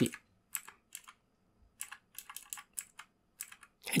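Computer keyboard and mouse clicks, about nine short irregular clicks over three seconds.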